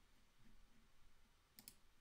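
Near silence, broken by two faint clicks in quick succession near the end.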